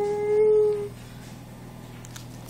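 Dog howling: one call that rises at the start, then holds a steady pitch and stops about a second in.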